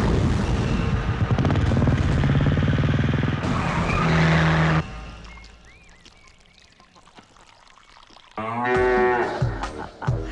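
A cow moos once, a call of about a second near the end. Before it, loud music over a steady engine-like drone cuts off suddenly about five seconds in, leaving a quiet stretch with faint chirps.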